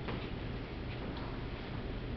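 A few faint ticks over a steady low hum of room noise.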